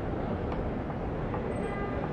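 Steady outdoor background din with a low rumble, with faint thin tones near the end.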